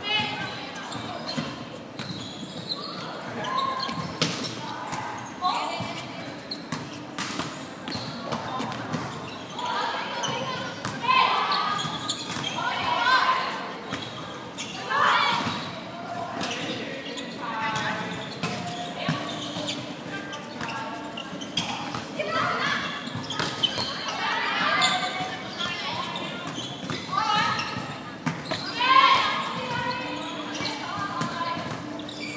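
Volleyball rally in a large sports hall: players calling out to each other in short shouts, with the ball's thuds as it is struck.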